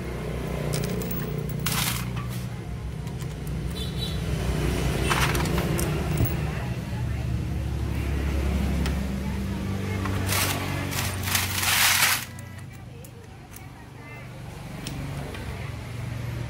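Road traffic: a steady low rumble of passing vehicles, a bit noisy. Short hissing bursts come through, the loudest lasting about two seconds and cutting off suddenly about twelve seconds in.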